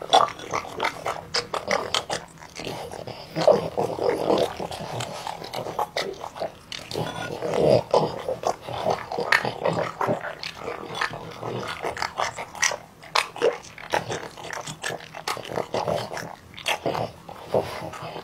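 A French bulldog eating from a bowl: a steady, irregular run of short chewing and mouth smacks.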